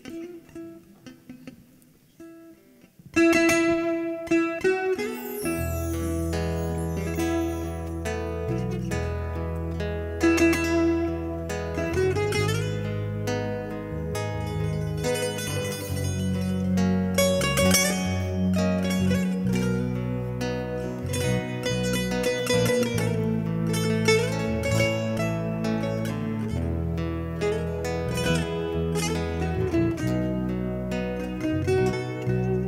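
Portuguese guitar (twelve-string guitarra portuguesa) picking a fado melody in quick plucked notes, starting about three seconds in after a quiet moment. A bass line joins about two seconds later under the melody.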